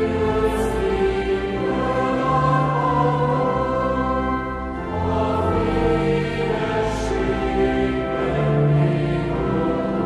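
Choir singing a slow church hymn in long held chords.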